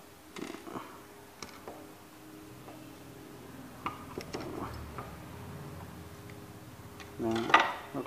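Scattered light metallic clicks and taps from a small screwdriver and small parts as a spinning fishing reel's bail-arm mechanism is taken apart by hand.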